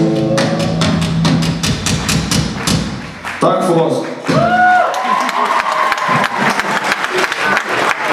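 The last chord of a rock song ringing out through the guitar and bass amplifiers and fading over the first couple of seconds, as the audience claps and cheers. Shouts rise over the clapping about four seconds in.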